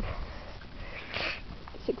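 A single short sniff about a second in, set against a low rumble.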